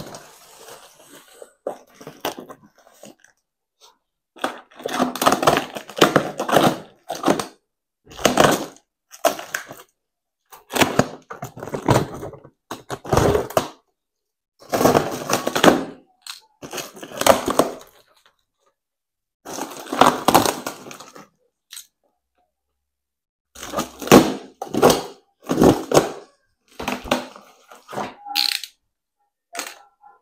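Plastic stretch wrap and tape on a cardboard box being slit with a box cutter and pulled away: about a dozen bursts of crinkling and tearing, most a second or two long, with short pauses between.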